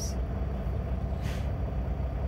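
Steady low engine hum of a semi truck idling, heard from inside the cab, with a short soft hiss about a second and a half in.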